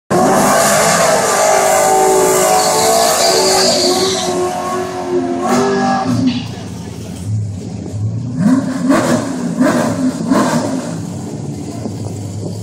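Fox-body Ford Mustang doing a burnout: the engine is held at high revs against spinning rear tyres for about six seconds. It then drops back to idle, with several short revs before staging.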